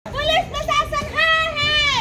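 A high-pitched voice calling out in a few short syllables, then holding one long note that falls away at the end.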